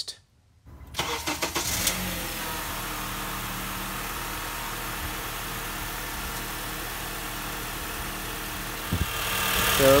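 2008 Honda Accord four-cylinder engine starting about a second in, then settling into a steady idle that gets louder near the end. The freshly installed serpentine belt runs without any squeal.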